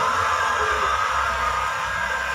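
Televised pageant broadcast playing through a speaker between announcements: a steady hiss with a held tone and a low hum, no speech.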